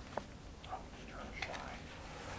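Faint, low voices close to a whisper, with a small click near the start.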